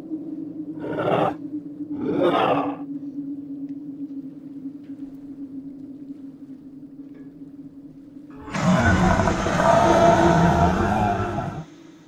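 Horror-film sound design: a steady low drone with two short whooshes early on, then a loud creature roar lasting about three seconds that cuts off sharply just before the end.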